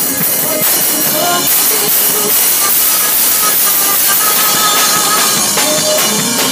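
Band playing loudly together: a rock drum kit played hard with continuous cymbal wash from Zildjian cymbals, over electric guitar and other pitched instruments.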